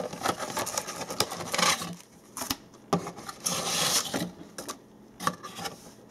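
Paper leaflets and cardboard rustling as printed inserts are pulled out of a cardboard box and laid on a desk, in irregular bursts with a few light taps, quieter near the end.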